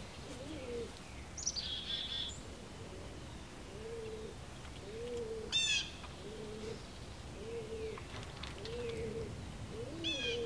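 A pigeon cooing, low calls repeated about once a second through the second half. Short high chirps from a small songbird cut in a couple of times, the loudest about halfway through.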